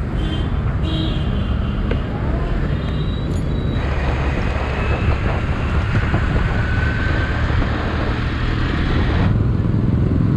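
Motorcycle engine running while riding through city traffic, a steady low rumble. Wind and road noise swell from about four seconds in with a faint rising whine, then drop away sharply near the end as the bike slows to a stop.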